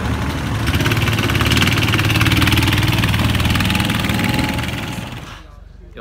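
Rental go-kart engine running hard, getting louder about a second in and fading away near the end.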